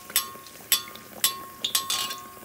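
A metal perforated skimmer clinks against a kadai (Indian wok) about five times at irregular intervals while working hot oil over a frying pua, with a low sizzle of oil underneath.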